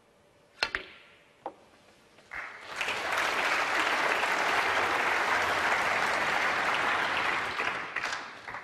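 Snooker cue striking the cue ball off the rest with a sharp click, and a ball-on-ball click about a second later. Then the audience applauds steadily for about five seconds, fading near the end.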